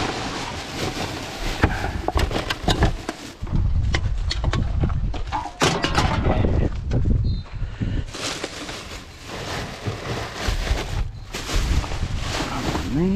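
Gloved hands rummaging through a black plastic garbage bag in a wheelie bin: the plastic rustling and crinkling, with many sharp clicks and knocks. Wind buffets the microphone underneath.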